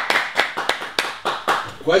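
Light applause from a few people: scattered, irregular hand claps.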